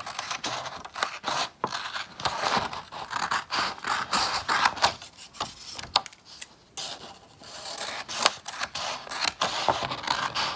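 Scissors cutting strips from a sheet of black paper: repeated snips, each with the crunch of the blades closing through the paper, with a short pause about seven seconds in.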